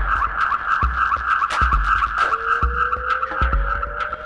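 Acid techno track: deep kick drum beats under a steady, rapidly pulsing high synth line and ticking hi-hats. A lower synth tone glides slowly upward in pitch, starting again from low about two seconds in.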